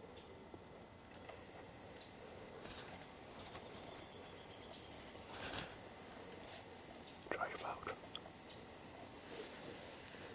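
Soft whispering with faint rustling, the loudest burst about seven seconds in. Under it runs a faint, steady, very high insect trill that starts and stops, and a drawn-out falling whistle is heard near the middle.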